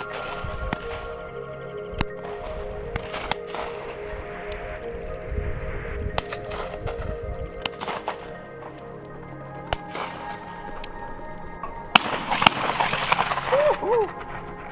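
Shotgun shots at flying game birds: several sharp reports at uneven intervals, the loudest pair about twelve seconds in, over steady background music.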